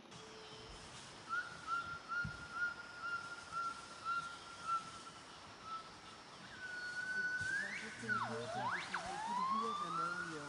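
Gibbons singing: a string of short whistled hoots on one pitch, about two a second, then longer whoops that rise, swoop steeply down and back up, and climb again near the end.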